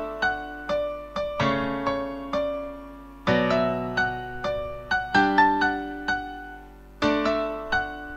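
GarageBand's Steinway Grand Piano software instrument playing back two piano parts with no effects or plugins: a chord struck about every two seconds under a line of single melody notes. The piano sounds a bit dry.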